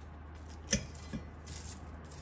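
A single sharp knock of a cleaver on a wooden chopping board about a second in, then a lighter tap and a brief dry rustle as smashed garlic cloves are picked apart by hand.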